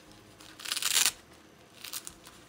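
Disposable diaper being peeled open: a tearing, crinkling rustle as its fastening tab pulls free, lasting about half a second from half a second in, with a shorter rustle near the end.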